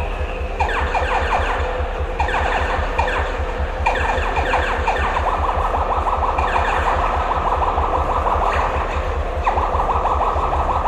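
Electronic soundscape through a theatre PA at the start of a rock concert: rapid, high, chirping pulses in short bursts that settle into a steadier run about halfway through, over a low continuous throb.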